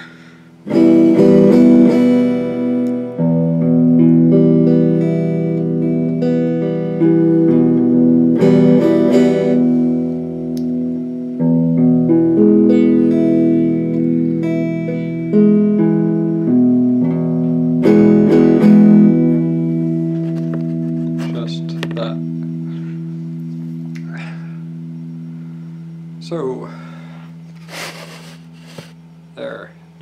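Strat-style electric guitar strumming chords that ring out long, changing chord a few times. The chords then fade away, and a few soft picked notes follow near the end.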